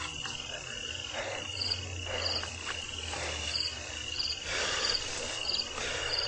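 Night insects, typical of crickets: a steady high trill with short, higher chirps repeating about once or twice a second, over intermittent soft rustling.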